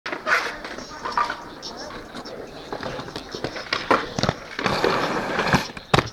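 Skateboard wheels rolling on concrete, with several sharp clacks of the board; the loudest clack comes just at the end.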